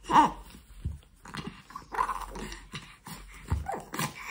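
Baby making short, excited grunts and squeals, several separate bursts with gaps between them, along with a couple of soft low thumps.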